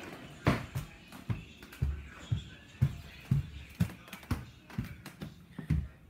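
Footsteps walking, a steady series of soft thuds about two a second.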